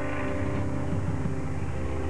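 Steady low rumble of an aircraft in flight, over a sustained musical drone.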